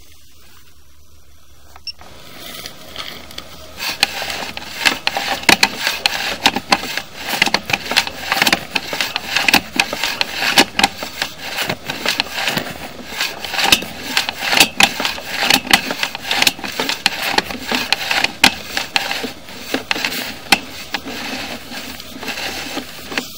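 Sewer inspection camera being pushed along a drain pipe on its push cable: irregular, rapid clattering and scraping that starts about two seconds in and turns busy from about four seconds on, over a faint steady hum.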